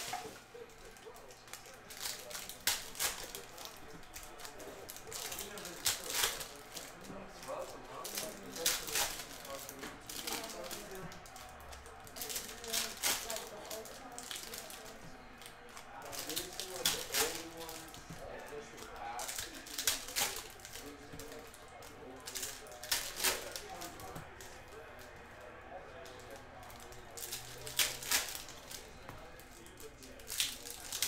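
Foil wrappers of Panini Contenders football card packs crinkling and tearing open in short, sharp rustles every few seconds, with cards being handled in between.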